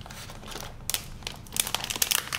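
Crinkling of a plastic packaging bag being handled and lifted out of a cardboard box, a run of quick crackles that grow denser in the second half.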